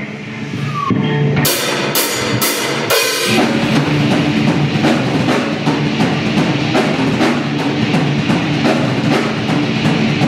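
A rock band rehearsing live: a guitar rings alone for the first second or so, then four loud drum-kit hits with cymbal about half a second apart, after which drums, electric guitars and bass play a loud, dense riff together.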